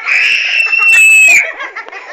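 A child's playful, high-pitched scream, held for about a second and a half and dropping slightly as it ends, followed by softer squeals.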